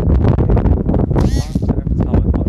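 Wind buffeting the microphone, with one short, high honk-like call a little over a second in.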